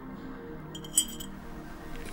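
A teaspoon clinks once against a small glass tea glass, a short bright ring about a second in, over soft background music.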